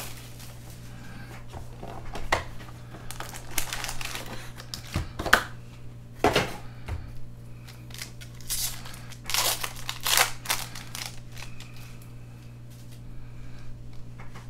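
Plastic shrink wrap and foil card-pack wrappers crinkling and tearing in the hands, in irregular rustling strokes, over a steady low hum.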